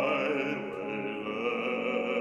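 Bass-baritone singing an art song in long held notes with vibrato, accompanied by grand piano.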